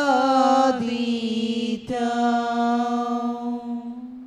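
A single unaccompanied voice singing a slow devotional chant in long held notes: the first note steps down to a lower one about a second in, and after a short breath a final note is held for over two seconds.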